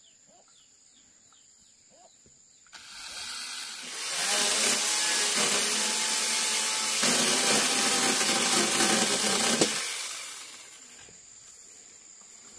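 Battery-powered mini chainsaw cutting through a green bamboo pole: it starts about three seconds in, runs steadily under load for several seconds with a shift in tone partway through, and winds down a little before the end.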